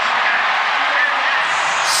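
Stadium crowd cheering a touchdown, a steady roar with a short burst of hiss near the end.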